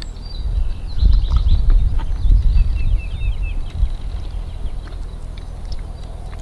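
Wind rumbling on the microphone, with a few soft clicks and crunches as raw green yucca seeds are bitten and chewed. Faint bird chirps about halfway through.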